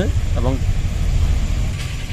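A strong, uneven low rumble under a man's single short spoken word and the pause that follows.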